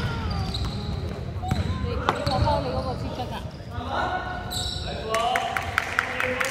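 Basketball being dribbled on a wooden court floor during play, with players' voices calling out in a large hall and a run of quick sharp ticks near the end.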